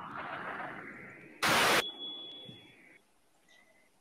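Audio glitch as the stream switches over: a fading hiss, a short loud burst of static about one and a half seconds in with a thin high tone trailing after it, then the sound cuts out to silence. The music video's sound is missing: an audio dropout on the stream.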